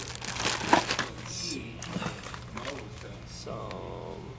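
Packaging crinkling and rustling as hands dig through a cardboard shipping box, busiest in the first two seconds with a sharp crackle under a second in.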